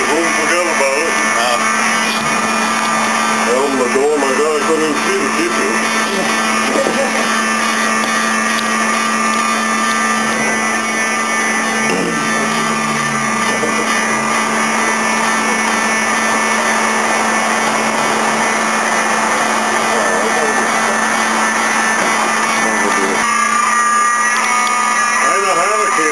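Building fire alarm buzzing continuously, a loud steady buzz, with people's voices briefly over it.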